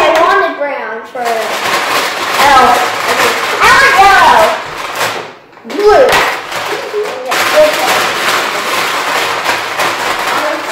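Brown paper bag rustling as hands rummage inside it for markers, in two long stretches with a short break near the middle. Short bits of voices come through between and over the rustling.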